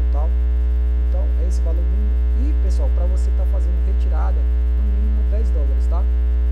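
Loud, steady low electrical mains hum on the recording, with faint, indistinct wavering voices underneath.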